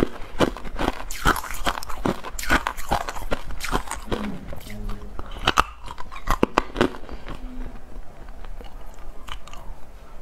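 Hard clear ice being bitten and crunched between the teeth, close to the microphone: a quick, irregular run of sharp cracks, thinning out to occasional crunches near the end.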